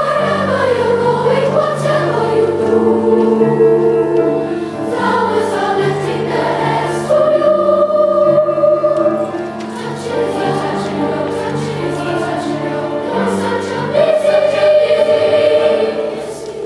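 Middle-school children's choir singing a two-part chorus with piano accompaniment, with long held notes in the middle and near the end.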